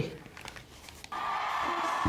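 After a quiet second, a recording of a huge concert crowd singing along in unison starts abruptly: a steady, blended wash of many voices in a large hall.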